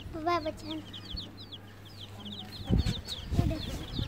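Baby chicks peeping: a steady stream of short, high, falling cheeps, several a second. A few low thumps come about three seconds in.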